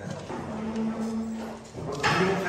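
A person's voice, off-microphone and unclear, with a steady hum-like tone held for about a second in the middle.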